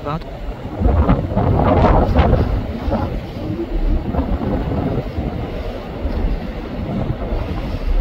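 Strong wind buffeting the microphone: a loud, gusting low rumble, strongest about a second or two in.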